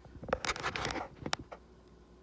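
Close handling noise from a hand working near the microphone: scraping and rustling for about a second, then a couple of sharp clicks.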